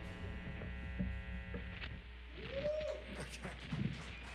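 The last chord of a live rock band's electric guitars rings out and fades away over the first two seconds, over a steady amplifier hum. Faint clicks and a short, faint rising-and-falling call follow about two and a half seconds in.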